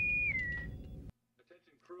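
Boatswain's pipe (bosun's whistle) call: one high whistled note that holds, then drops in pitch and stops less than a second in, over a low rumble that cuts off about a second in.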